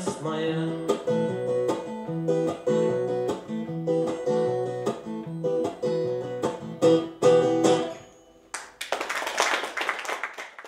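Takamine acoustic guitar playing a closing instrumental passage of separately picked notes that ends about eight seconds in. Audience applause starts just after.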